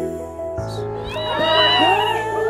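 Background music changes about half a second in. From about a second in, several high women's voices squeal and shriek over it, gliding up and down and overlapping.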